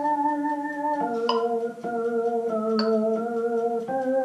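Casio XW-G1 synthesizer keyboard playing a slow chorale in held, organ-like chords that change about once a second. A short high click sounds about every second and a half.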